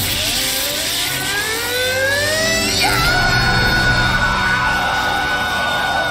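A man crying out and then screaming while being zapped by crackling magical electricity: his cry rises in pitch over about three seconds, then holds on one high note. Music plays underneath.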